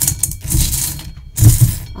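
Small hard pieces rattling and clicking together as they are handled or shaken by hand, in two bursts, the louder one about a second and a half in.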